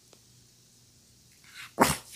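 A Maltese dog gives one short, loud bark near the end, just after a brief breathy sound.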